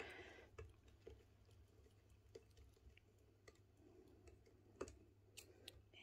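Near silence with faint, scattered clicks from a screwdriver turning a screw on an AK tufting gun.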